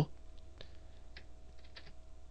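A handful of faint, irregular computer keyboard clicks over a low steady electrical hum.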